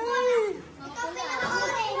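Children's voices calling out and chattering.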